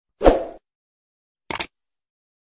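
Editing sound effects from an animated subscribe-button intro: a short hit that fades out within half a second near the start, then a quick double click about a second and a half in, as the cursor clicks the subscribe button.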